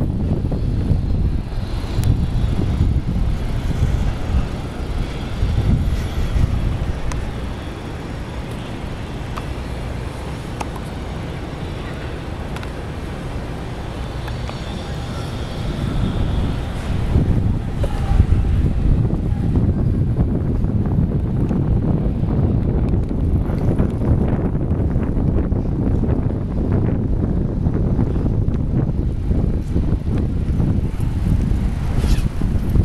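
Wind buffeting the camera's microphone while riding a bicycle: a rumbling rush that eases for several seconds in the middle and picks up again about halfway through.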